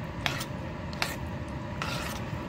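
Metal spoon stirring a thick pudding batter in a metal bowl, with soft scraping and two sharp clinks of the spoon against the bowl, one early and one about a second in.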